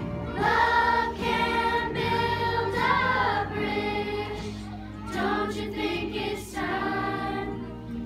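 Children's choir singing, a few long held notes in each phrase with short breaks between phrases.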